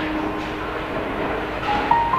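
Bowling ball rolling down a wooden lane toward the pins, a steady rumble.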